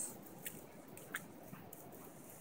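Quiet beach ambience: a faint, steady wash of distant surf, with a few light ticks scattered through it.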